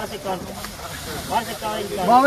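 Several men's voices talking and calling bids in a crowd at a garlic auction, heard through a steady hiss.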